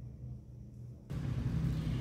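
Low steady background hum, with no other sound clearly above it. About a second in it jumps louder and a wider hiss joins, where the recording cuts to another take.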